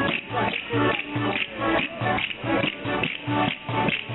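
Live accordion folk dance tune, with sustained reed notes over a quick, steady beat of about three pulses a second.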